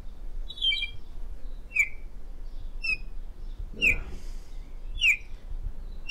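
A small songbird chirping: short, sharp, slightly falling chirps about once a second, with a brief rustle about four seconds in.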